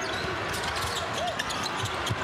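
A basketball being dribbled on the court, its bounces knocking irregularly under steady arena crowd noise.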